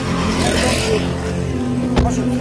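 A road vehicle passing close by: a swell of engine and tyre noise that rises and fades about half a second in, over a steady music bed.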